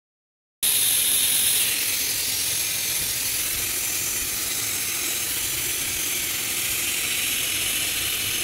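Steam hissing steadily from an aluminium pressure cooker's weight valve, starting about half a second in.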